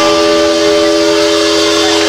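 A live band's final note held steady at the end of a song: one long sustained chord ringing at a single pitch.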